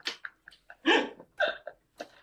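Short, breathy bursts of laughter from people around a table: three brief bursts, the loudest about a second in.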